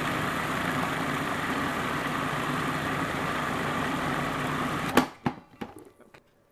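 Food processor motor running steadily as it grinds ground meat together with processed onion and herbs, then cutting off abruptly about five seconds in. A sharp click and a few lighter knocks follow.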